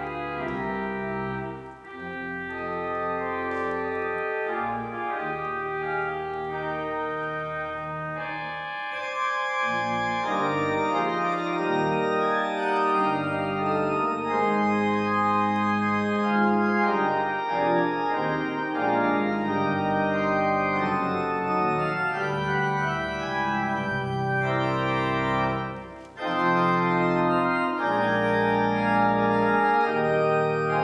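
Church organ playing a slow piece in held chords, with short breaks between phrases about two seconds in and near the end. It grows louder about ten seconds in.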